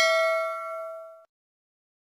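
Notification-bell 'ding' sound effect: one struck bell chime with several clear tones, ringing out and fading, then cutting off a little over a second in.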